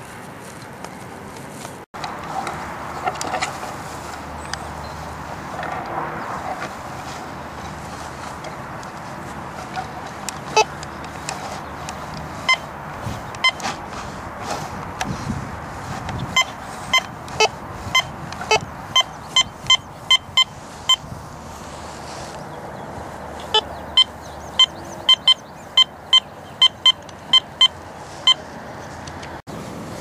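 Metal detector giving repeated short, sharp beeps, about two a second, as its search coil is swept over the ground. A pause comes about two-thirds of the way through, then the beeps resume. The beeps signal a buried metal target, which turns out to be a dime.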